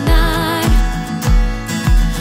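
Live acoustic guitar strummed in a steady rhythm over a foot-pedal kick drum that thumps about every two-thirds of a second, with a woman singing.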